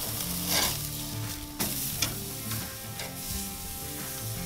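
Flank steak sizzling as it sears on a grill grate at high heat, about 600 degrees, with a few short clicks of metal tongs as it is flipped.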